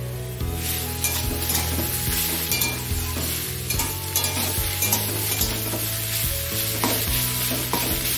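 Food sizzling as it fries in a stainless-steel kadai over a gas flame, the hiss swelling up about half a second in. A steel spatula stirs it, scraping and tapping against the pan many times.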